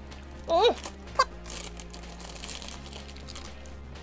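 Faint crinkling of a foil blind-bag packet being opened by hand, over a steady low background hum.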